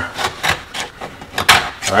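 Utility knife blade scraping and cutting along the edge of a damaged patch in a laminate countertop, through to the wood-fiber core, in short scraping strokes with a louder one about one and a half seconds in.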